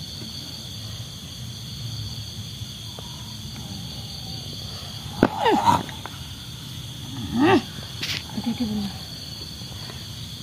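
A person growling and crying out like a wild animal, in a few short, loud bursts with sliding pitch about halfway through and again a couple of seconds later, over the steady high-pitched chirring of night insects.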